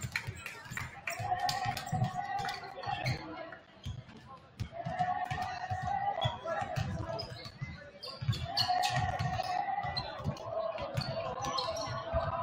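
Many basketballs being dribbled on a hardwood gym floor during warm-up drills: irregular, overlapping bounces throughout, with voices in the gym behind them.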